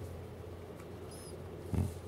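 A dog gnawing a hard chew-bone treat held in her paws, with faint clicks and scrapes of teeth. A brief high squeak comes about a second in, and a short, louder low sound near the end.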